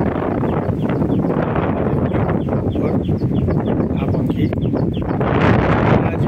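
Wind buffeting the microphone with a steady rumble, while small birds chirp repeatedly in short, high, falling notes.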